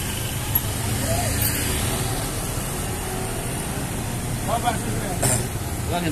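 Road traffic going by: motorbikes and a car passing with a steady engine and tyre rumble, and faint voices nearby.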